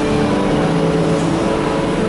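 Steady low rumble of vehicle engines, with a held low engine hum coming and going.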